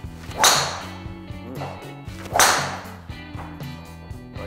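A golf driver swung and striking the ball: a loud swishing crack about half a second in. A second, similar sharp swish follows about two seconds later. Steady background music plays throughout.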